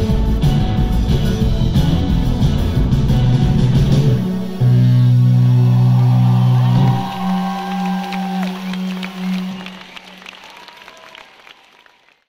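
Live rock band with electric guitars finishing a song: the full band plays, then a loud final low chord is held for a couple of seconds, and a single low note rings on and dies away as the sound fades out.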